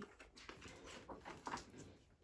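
Faint rustle and handling of a hardcover picture book's page being turned.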